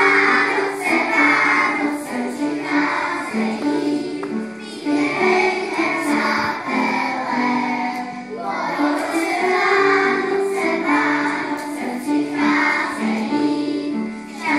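A group of young children singing a song together as a choir.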